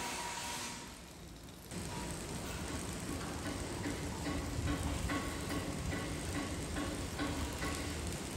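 Outdoor construction-site and street ambience: a steady bed of traffic and machinery noise, with a short electronic tone repeating about twice a second through the second half.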